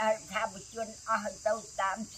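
A steady, high-pitched insect chorus of crickets runs throughout, under a woman's voice speaking in short, evenly paced phrases.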